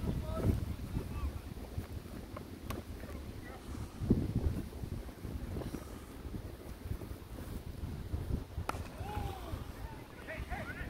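Wind buffeting a phone microphone, a gusting low rumble, with a couple of sharp clicks and faint distant voices near the end.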